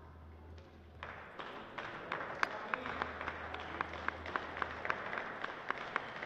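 Crowd applauding: scattered hand claps that start about a second in and keep going, with single sharp claps standing out.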